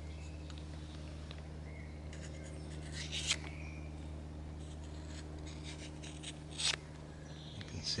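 Opinel folding knife's freshly sharpened blade slicing thin card: short, light scratching cuts, the clearest about three seconds in and again near seven seconds in. The cuts are fine and clean, the sign of a very sharp edge.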